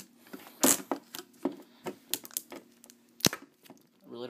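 Metal collector's tin being worked open by hand: a series of sharp clicks, scrapes and snaps, the loudest a scrape just under a second in and a sharp snap near the end.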